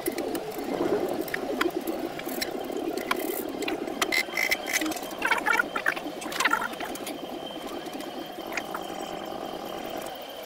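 Scattered clicks and light knocks of hands working on the fittings and wiring of a Ford Barra inline-six engine, over a steady background noise, with a few short higher-pitched sounds about halfway through.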